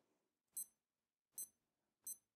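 Two short, high electronic beeps from a Casio G-Shock GBD-100 digital watch as its buttons are pressed, a little under a second apart.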